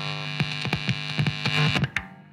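A steady electrical buzz with irregular crackling clicks running through it, cutting off suddenly near the end, like an old TV set's hum and static.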